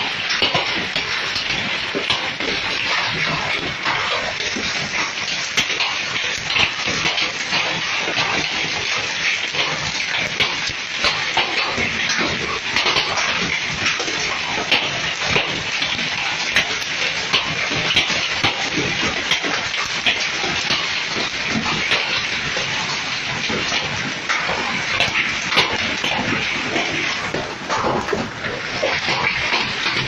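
Heavy rain and hail falling hard: a dense, steady hiss thick with the sharp ticks of hailstones striking the ground and vehicles.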